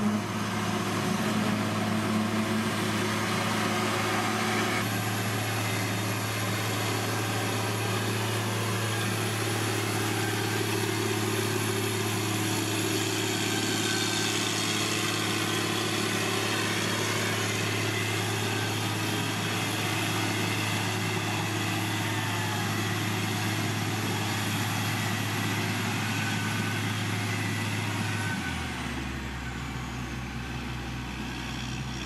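Diesel engine of a Dresser motor grader running steadily as the grader works the dirt, with a constant low hum. The sound drops and changes a second or two before the end.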